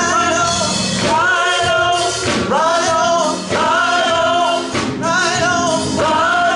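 Church praise team singing a gospel song into microphones, in long held phrases with short breaks between them.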